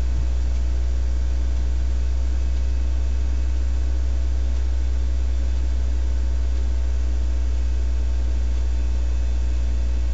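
Steady low electrical hum with a faint hiss over it, unchanging throughout, with no ringing or keypad tones.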